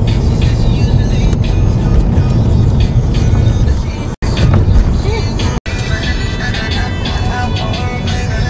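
Music playing inside a moving car, over the low rumble of road noise. The sound cuts out completely for an instant twice, about four and five and a half seconds in.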